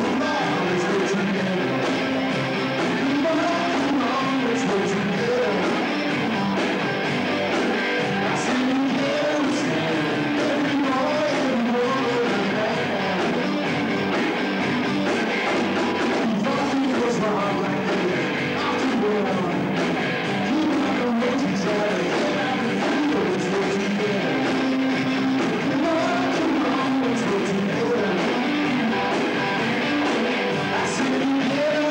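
Live rock band playing a song: a male lead singer over electric guitars, bass guitar and drums, loud and steady.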